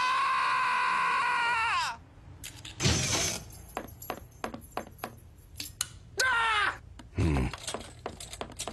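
A long, high-pitched held cry or scream that slides down and stops about two seconds in. Scattered knocks and clicks follow, then a second, shorter falling cry a little after six seconds.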